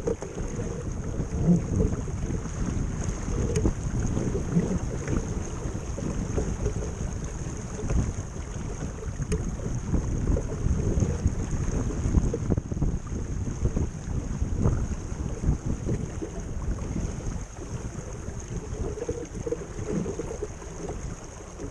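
Wind buffeting the microphone and water rushing along the hull of a 12 ft flat iron skiff running downwind under sail, with an uneven, gusty rumble.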